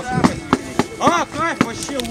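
Several sharp, irregularly spaced wooden knocks, like weapons struck against round wooden shields by reenactment fighters lining up for battle, with a couple of short shouts from the voices around them.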